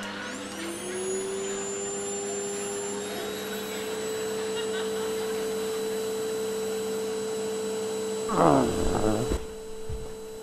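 A motor-like whine rises in pitch over the first second and settles into a steady hum. About eight seconds in, a louder swooping sound falls in pitch over the hum.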